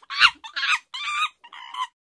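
Hen-like clucking: a run of four short, high-pitched clucks, about two a second.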